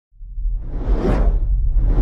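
Intro sound effects: a whoosh that swells up to a peak about a second in, with a second one building near the end, over a deep low rumble.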